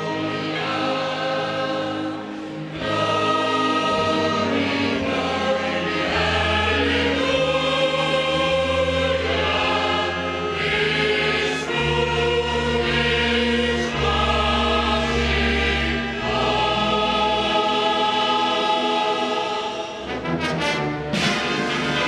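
Mixed choir of men and women singing in long held notes, with a fanfare band accompanying underneath on deep sustained bass notes.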